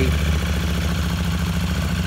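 KTM 890 Duke R's parallel-twin engine idling steadily.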